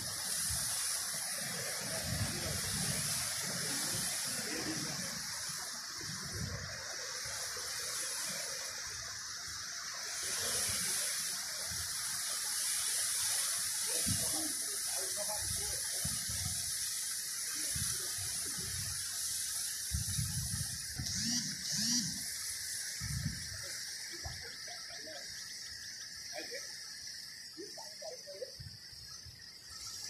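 Steady high-pitched chorus of insects, such as crickets, from the reed bed, with faint, scattered low sounds underneath.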